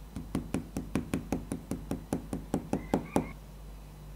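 Rapid, even tapping on leather, about five knocks a second for some three seconds, the last knock the loudest, with a short high ring near the end: a hand tool striking layered leather pieces on a cutting mat.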